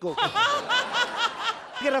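Studio audience laughing, with one person's loud, rhythmic ha-ha laugh pulsing about four times a second above the crowd.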